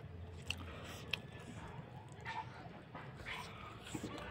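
Mouth sounds of chewing food while fingers work rice on a wooden plate. Two short, sharp, high squeaks come about half a second and a second in.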